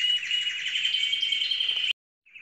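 Caged canaries and goldfinches singing: a continuous run of rapid, high trills that cuts off abruptly near the end.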